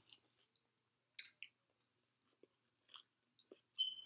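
Faint, scattered mouth sounds of someone chewing a forkful of vegan chili and raw vegetable salad, a few soft clicks and smacks spaced out over the seconds.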